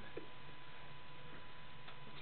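Quiet room noise with a faint steady high hum, broken by two light clicks: one just after the start and one near the end.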